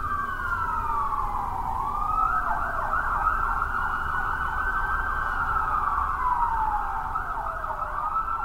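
Emergency vehicle sirens wailing, at least two overlapping, their pitch sliding slowly down and back up, with a faster warble through the middle.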